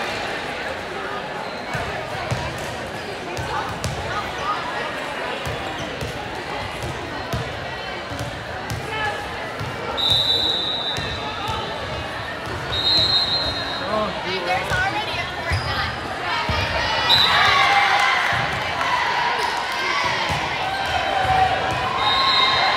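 Gym noise: indistinct voices of players and spectators, with repeated thuds of balls bouncing on the court floor. A few short, shrill steady tones sound about halfway through and again later.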